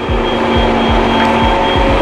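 Background music with a steady beat of about two low thumps a second under held tones.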